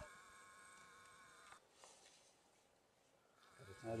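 Near silence, with only a faint steady high hum.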